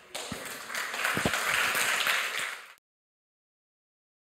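Audience applauding, swelling about a second in, then cutting off suddenly.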